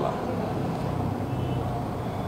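Steady low background noise, such as distant traffic or machinery, in a pause between speech, with a faint low hum near the end.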